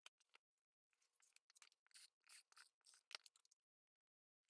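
Near silence, with faint rustles of paper and card being handled and laid down, and one light tap about three seconds in.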